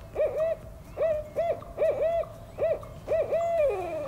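Barred owl calling: a rhythmic series of short hoots in quick groups, ending in a longer hoot that slides downward.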